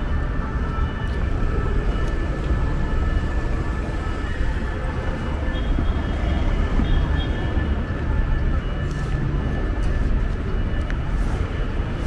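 Steady city street noise: a low rumble of traffic with a faint, steady high tone running through it.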